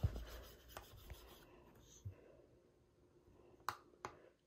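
A plastic stylus scribbling and rubbing across the screen of a kids' LCD writing tablet, faint and strongest in the first second or so, followed by a few light taps and one sharper click near the end.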